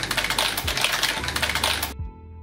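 Rapid typing on a backlit computer keyboard: a dense, fast clatter of key clicks that stops abruptly near the end.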